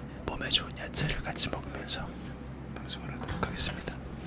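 Whispered speech: soft, hushed talking with hissy consonants.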